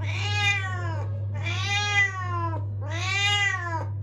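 A calico cat meowing three times in long, drawn-out meows of about a second each that rise and then fall in pitch. The cat is protesting at being held up for a bath. A steady low hum runs underneath.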